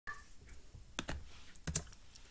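Two pairs of sharp clicks close to the microphone, about a second and 1.7 seconds in, the second pair louder: keys or buttons being pressed on the recording computer.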